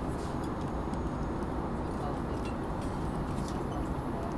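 Steady low roar of a jet airliner cabin in flight, with a few faint small clicks from a plastic condiment sachet being handled.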